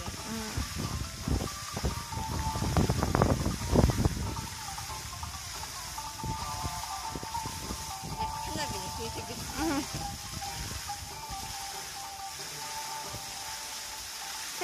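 A song with a singing voice played over outdoor loudspeakers for a musical fountain show, over the steady hiss of the fountain's water jets. Loud low rumbling bumps come in the first four seconds.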